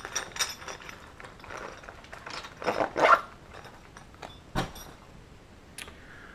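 Handling noise from camera-bag contents being moved by hand: scattered rustling and light clicks, a louder spell of rustling about three seconds in, and a sharp knock a second or so later.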